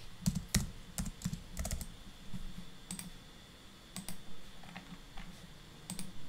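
Typing on a computer keyboard: a quick run of keystrokes in the first two seconds, then a few scattered single clicks.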